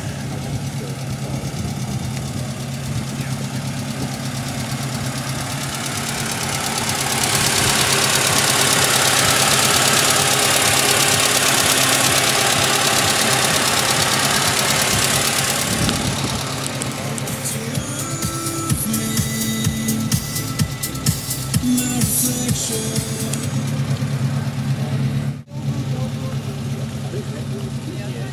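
A car engine idling steadily. A louder rushing noise swells in about seven seconds in and dies away by about sixteen seconds.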